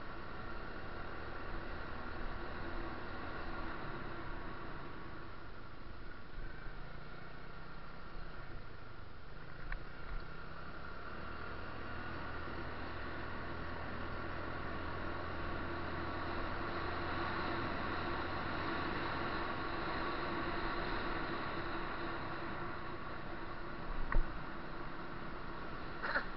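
Steady engine and road noise from a vehicle driving at night, a continuous hum with a low drone that grows a little stronger past the middle.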